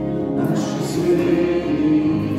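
A live worship song: men and women singing together, accompanied by two acoustic guitars and an electric keyboard.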